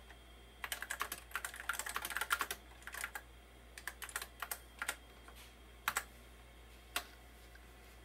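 Apple Lisa 2 keyboard being typed on: a quick run of keystrokes for about the first three seconds, then a few scattered single clicks.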